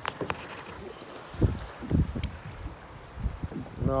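Wind buffeting the microphone over choppy water around a kayak, with a few low thumps about a second and a half to two and a half seconds in, and a couple of small clicks near the start.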